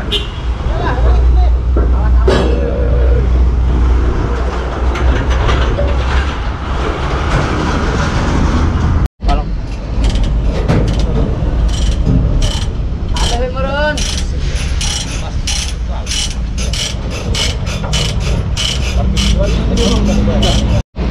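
A heavy vehicle engine idling with a strong low rumble. After a cut, a long run of regular sharp metallic clicks and rattles from a worker freeing the lashing at the crane's wheel, typical of a chain binder's ratchet being worked loose.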